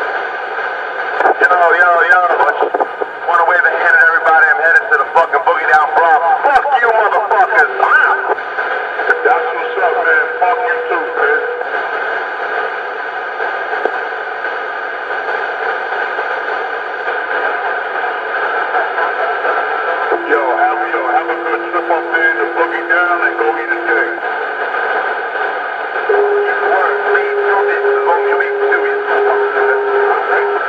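Indistinct voices through a small, tinny speaker over a constant hum, loudest in the first several seconds. In the second half come a few long held notes.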